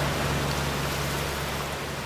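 Steady wash of sea surf on a beach, fading slowly out, with a low steady hum underneath that dies away near the end.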